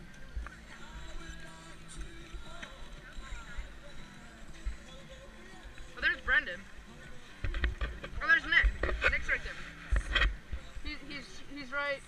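Voices around a busy ski slope, too indistinct to make out words, over faint background music. In the second half there are louder voices and calls, with low rumbling on the microphone.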